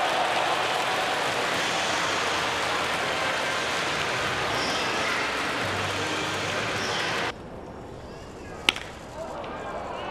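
Baseball stadium crowd applauding and cheering a fielding out at first base. The crowd noise cuts off abruptly about seven seconds in, leaving quieter stadium ambience, and one sharp crack comes near the nine-second mark.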